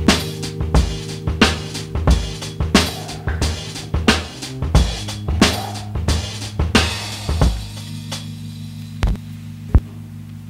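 Music: a drum kit plays a steady beat over held low notes. The drumming drops out about seven and a half seconds in, leaving the held tone and two lone hits near the end.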